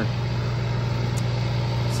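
Natural gas generator engine running steadily: a constant low hum.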